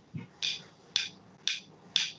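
Sharp taps in an even beat, about two a second, four strokes in all.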